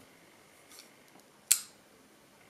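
Bestech Predator titanium frame-lock flipper knife being folded shut, with one sharp metallic click about one and a half seconds in as the blade snaps closed into the handle.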